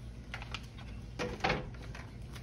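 A few light taps and clicks from kitchen handling, with one slightly louder knock about one and a half seconds in.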